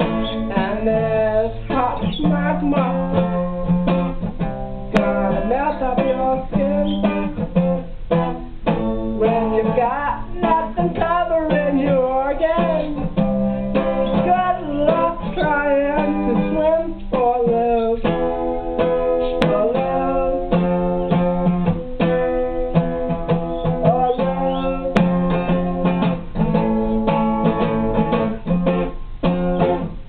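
Acoustic guitar strummed steadily, with a voice singing over it.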